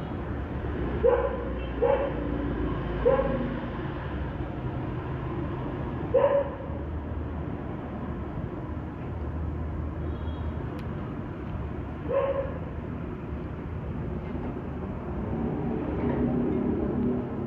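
A dog barking in short barks: three about a second apart, then two more spaced well apart, over a steady low background rumble.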